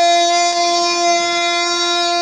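A wind instrument holding one long, steady note.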